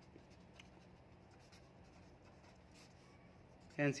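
Felt-tip pen writing on paper, with faint, short scratching strokes.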